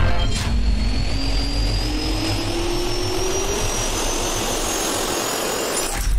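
Jet engine spooling up, as an intro sound effect: a steady rushing roar with a whine that climbs steadily in pitch, over a deep rumble that eases off after the first few seconds.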